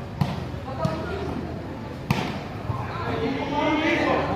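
A volleyball struck hard by players' hands and arms during a rally: three sharp slaps, a moment in, near one second and at about two seconds, the last the loudest. Spectators' voices run underneath and grow louder and higher toward the end.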